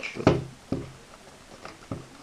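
Cardboard box being handled and opened by hand, with a few short knocks and scrapes of the packaging: a loud one at the start, another just under a second in, and one near the end.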